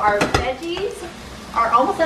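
Food sizzling in a frying pan as a spatula stirs and scrapes it, with a few sharp knocks of the spatula against the pan in the first half second.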